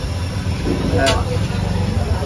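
A steady low rumble under faint background voices, with a single short click about a second in.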